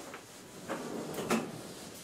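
A sliding blackboard panel being moved along its runners: a short scraping slide that ends in a knock about a second and a half in.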